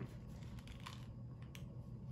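A plastic Easter egg being handled and pried open, a few faint scattered light clicks and rustles over a low room hum.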